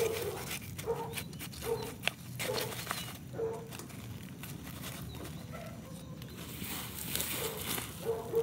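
A dog barking repeatedly, short barks about once a second, over light rustling of dry rice hulls being pressed into a pot by a gloved hand.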